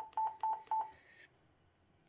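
Yaesu FT-450D transceiver's key beep sounding four times in quick succession, short beeps of one pitch about a quarter second apart, as its MODE button is pressed repeatedly to step through operating modes.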